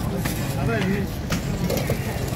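Busy market ambience: people talking over a steady low rumble of vehicle engines, with one sharp knock about a second and a half in.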